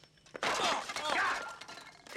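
China coffee cups clattering on a serving tray in a sudden burst starting about half a second in and dying away over about a second.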